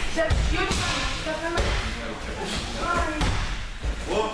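Dull thuds of bodies landing on tatami mats during throw practice, several in a few seconds, with voices carrying in the hall.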